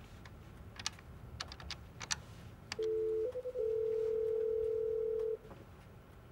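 Desk telephone being dialled on speakerphone: a few keypad button clicks, then a short electronic two-note beep and a steady ringing tone of nearly two seconds as the call rings out.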